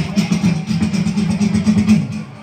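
Beatboxing into a handheld microphone over a PA: a buzzing low bass sound held under fast, regular clicking hi-hat-like sounds.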